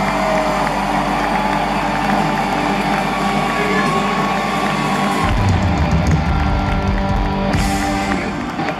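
Live country-rock band holding a sustained chord over a cheering crowd. About five seconds in, the drums come in with a rapid run of heavy hits, as the song winds up to its ending.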